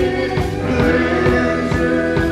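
Live band music: a steady drum beat of about two hits a second under held sung notes and sustained keyboard chords.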